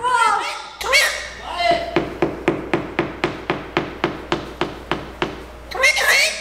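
Galah cockatoo in a tantrum, flapping while it clings to the wall: a couple of short cries, then a fast, even run of knocks, about five a second for roughly three seconds, as its wings beat against the cardboard boxes and the wall.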